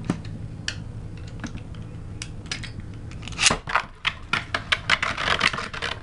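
A few scattered clicks, then from about three and a half seconds in a Beyblade spinning top rattles and clicks rapidly as it spins against the plastic stadium's floor and wall.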